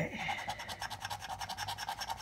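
A coin scraping the latex coating off a scratch-off lottery ticket, in rapid, even back-and-forth strokes.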